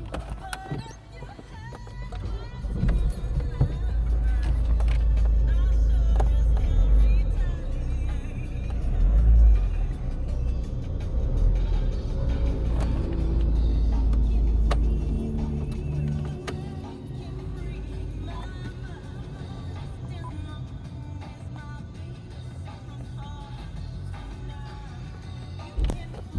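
Car engine revved up from idle and held, its low rumble swelling over several seconds before dropping back to a quieter idle about halfway through, heard from inside the cabin. Music plays in the background.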